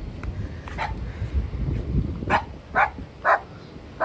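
A dog barking three times, about half a second apart, in the second half.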